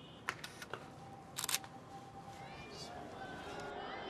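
Camera shutter clicking: a few sharp single clicks in the first second, then a louder quick run of clicks about a second and a half in, with faint voices after.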